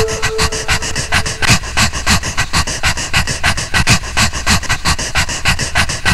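A fast, even rhythm of short breathy, panting-like pulses, about six a second, on the film's soundtrack. A held musical note fades out about a second and a half in.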